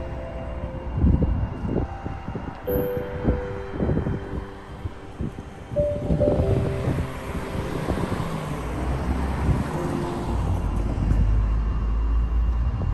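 Background music with slow, held notes over outdoor street ambience. Irregular low buffets and thumps of wind and handling noise on the microphone run through it, with a heavier low rumble near the end.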